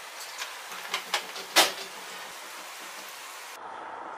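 Chana dal batter deep-frying in hot ghee in a kadai on medium flame: a steady sizzling hiss. A few sharp clicks rise over the hiss, the loudest about one and a half seconds in.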